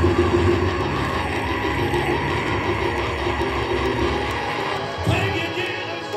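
Gospel church music with long held chords, with a congregation shouting and cheering over it.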